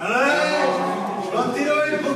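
A person's drawn-out, wordless voice: long held vowels that slide up and down in pitch, in two stretches, the second beginning about one and a half seconds in.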